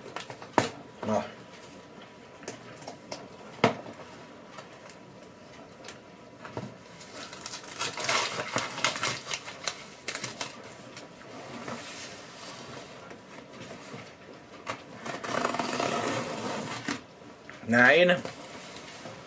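Fingers scraping, picking and pulling at a tightly sealed cardboard package that will not open. There are scattered taps and clicks, then two stretches of scraping and rustling, about eight and about sixteen seconds in.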